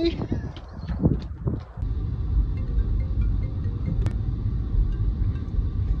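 Steady low rumble of a car being driven, heard from inside the cabin, beginning about two seconds in after a few short sounds.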